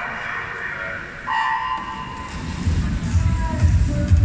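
Electronic start signal of a swimming race: one steady beep a little over a second in, just after the starter's call. Then a loud low din builds up over the last couple of seconds as the race gets under way.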